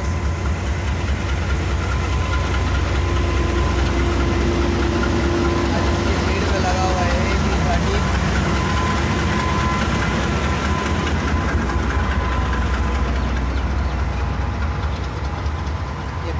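Diesel-electric locomotive AGE-30 No. 6004 running under power as it pulls a passenger train out of the station, a steady, heavy low engine rumble.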